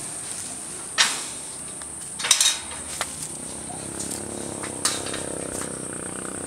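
Insects chirring in a steady high drone, broken by a few sharp knocks and clanks: a loud one about a second in, a quick cluster a little after two seconds, and lighter ones near three and five seconds.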